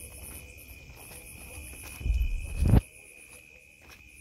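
Crickets chirping steadily in a high, pulsing trill at night, with a brief low rumble about halfway through that is the loudest sound.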